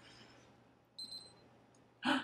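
A handheld blood ketone meter giving a short, high electronic double beep about a second in as its reading comes up; otherwise near silence.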